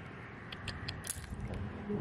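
A few sharp clicks of small polished stones knocking together in a wet hand in shallow seawater, bunched around the first second, with a faint low hum coming in after that.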